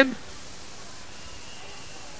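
The last word of a man shouting over the PA cuts off right at the start, followed by a steady hiss from the old live recording, with no music playing.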